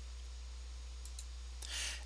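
Two faint computer mouse clicks about a second in, over a steady low hum, then a short breath drawn in near the end.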